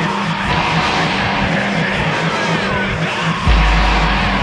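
Instrumental passage of a Christian metalcore song: a dense wall of distorted guitar and drums over a repeating low two-note figure, with a heavy low note coming in about three and a half seconds in.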